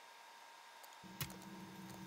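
Near silence: faint room tone with a thin steady tone. About a second in, a low steady hum sets in, with a couple of faint clicks.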